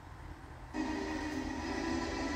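Film soundtrack played through a television's speakers: a low rumble, then about three-quarters of a second in a loud held chord of music starts suddenly, the opening of the title music.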